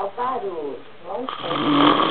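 A man asleep with his mouth open, snoring: a long, harsh rasping snore that starts just over a second in and is loud.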